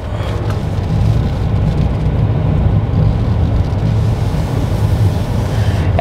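Cabin noise of a Mitsubishi Delica D:5 on the move: a steady low drone of road and tyre noise with the diesel engine underneath. The mud-terrain tyres make the noise fairly high.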